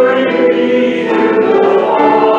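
A choir singing a hymn in slow, sustained chords, the chord changing about a second in.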